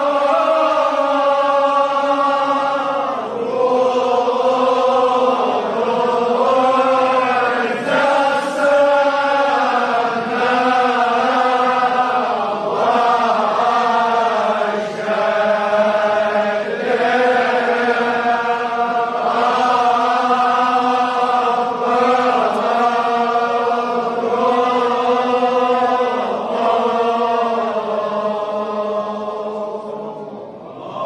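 Kashmiri marsiya recitation: men's voices chanting in unison in long, slow melodic phrases with held notes, each phrase a few seconds long.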